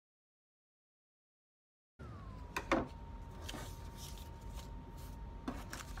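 Dead silence for about two seconds, then quiet room tone with a faint steady whine and a few light knocks and taps from paper cutouts and scissors being handled on a wooden table.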